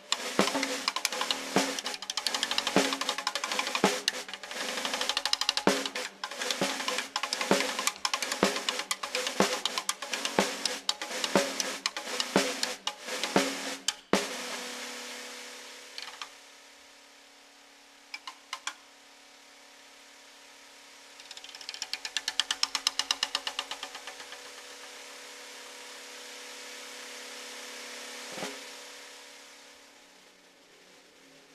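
Electronically prepared snare drum played with sticks: fast, dense strikes over a buzzing drone. About halfway through the playing cuts off abruptly, leaving a steady low electronic hum with a few isolated taps, a quick flurry of rapid pulses, and a single thump near the end.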